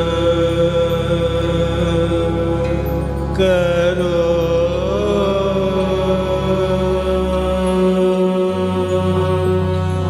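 Male classical vocalist singing long held notes, with a slow slide up and back down a few seconds in, over a steady low drone, accompanying himself on a plucked swarmandal.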